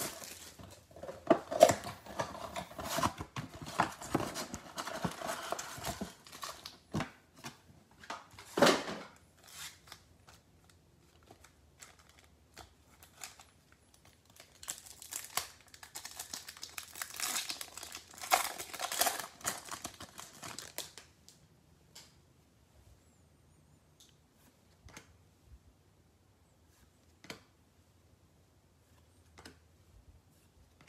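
Plastic shrink wrap crinkling and tearing as it is stripped off a trading-card box. About fifteen seconds in, a card pack wrapper is torn open and crinkled for several seconds, followed by a few faint clicks of cards being handled.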